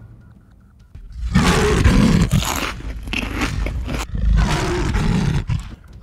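Two long, loud roars, the first starting about a second in and the second following right after it.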